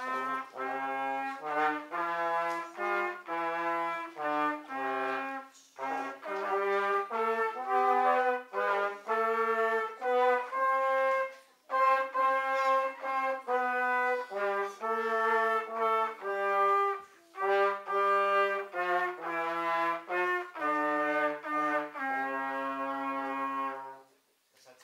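A small brass ensemble of trombones, tenor horns and tuba plays a tune in harmony, phrase by phrase, with short breaks between phrases. A final held chord cuts off near the end.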